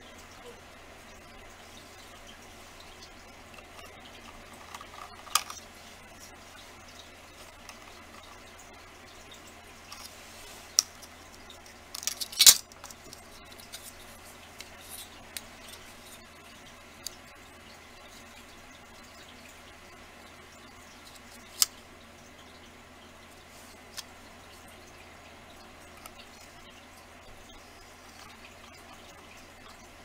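Scattered light clicks and taps of a ruler and cutting tool on a craft mat as polymer clay is measured and cut into squares, with a short cluster of louder taps about twelve seconds in. A faint steady low hum lies underneath.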